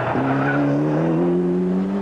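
Ford Escort rally car's engine accelerating hard. A brief dip in pitch just after the start, like a gearchange, is followed by a steady climb in revs.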